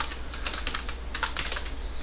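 Typing on a computer keyboard: a quick, continuous run of key clicks as a line of text is entered.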